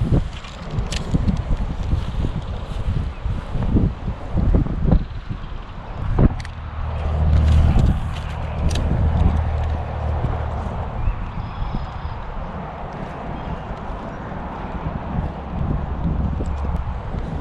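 Strong wind buffeting the microphone in low rumbling gusts, loudest a little before halfway through, with a few sharp clicks and knocks from handling a spinning rod and reel during a cast and retrieve.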